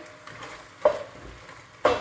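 Chicken pieces frying with a low sizzle as they are stirred around a stainless steel pot with a spoon, being browned (bhuna) before the spices go in. A single sharp knock sounds about a second in.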